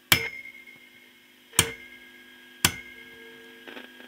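Three sharp clicks, a second or so apart, as the rotary attenuator switch of a Vegaty ST4 signal tracer is turned step by step. A faint steady hum and tone from the tracer's loudspeaker carry on between the clicks.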